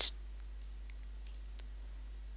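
A few faint clicks of a computer mouse while a brush setting is adjusted, over a low steady room hum.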